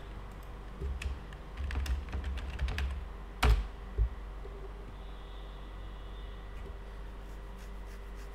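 Typing on a computer keyboard: a quick run of key clicks for about two seconds, then two harder key strikes about half a second apart, over a steady low hum.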